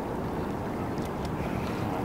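Steady wind buffeting the microphone, with choppy water washing against a small boat's hull.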